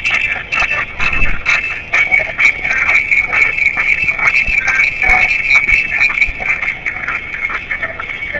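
Tinny playback from a small handheld media player's speaker: a busy room's voices mixed with music, thin and crackly with almost no bass.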